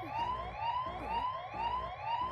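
Alarm siren sound effect from the anime's soundtrack: a rising electronic sweep repeated about two and a half times a second, with a low pulsing hum under it.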